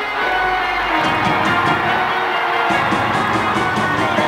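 Rock band playing loudly live in an arena, amplified through the PA and heard from the audience, with steady drum and cymbal hits under the pitched instruments.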